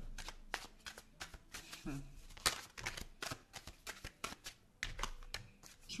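A tarot deck being shuffled by hand: a rapid, irregular run of crisp card snaps and flicks, with a short 'hmm' about two seconds in.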